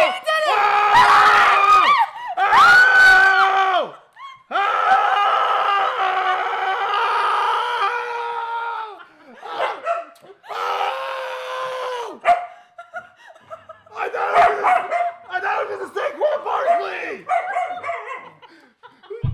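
People screaming in excitement: long, high-pitched sustained shrieks and yells of celebration, breaking into shorter excited cries toward the end.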